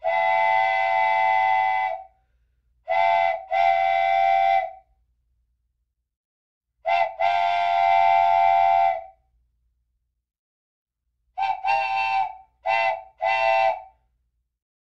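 A vehicle horn played as a sound effect: a multi-tone horn chord sounded in long blasts of about two seconds, and a run of four short toots near the end.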